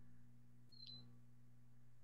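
Near silence: a faint steady low hum, with one faint brief blip just under a second in.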